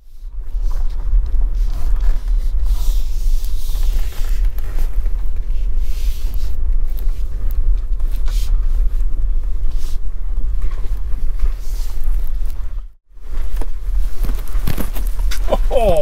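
Tesla Model Y cabin on a rough unsurfaced track: a steady deep rumble of tyres and suspension over the bumpy ground, with no engine note. It drops out briefly about 13 seconds in, then resumes.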